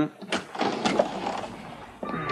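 A few sharp clicks and knocks in the first second as a door's lock and handle are worked to open it, then a fading rustle.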